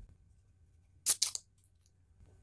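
An aluminium energy-drink can being opened: its pull tab cracks open about a second in, a short double crack and hiss of escaping fizz, followed by a few faint ticks.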